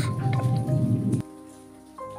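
Background music with a light mallet-percussion melody plays over food sizzling in a pan. The sizzling cuts off suddenly just over a second in, leaving only the music.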